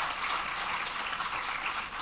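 Audience applauding steadily at the end of a lecture.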